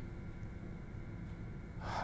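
Low, steady room hum during a pause in a man's talk, ending with his audible intake of breath just before he speaks again.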